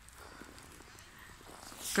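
Faint, steady outdoor background noise with nothing distinct in it. A woman starts speaking just before the end.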